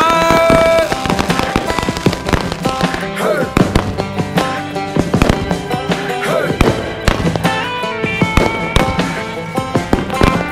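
Fireworks going off in quick succession, many sharp bangs and crackles, mixed with a music track that has singing in it.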